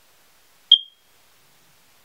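A single short, high-pitched chirp a little under a second in, ringing off quickly.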